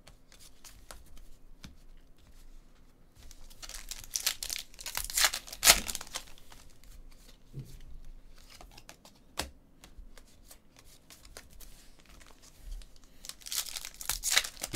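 A foil trading-card pack wrapper crinkling and tearing as it is opened, loudest a few seconds in and again near the end, between light clicks of cards being shuffled and stacked by hand.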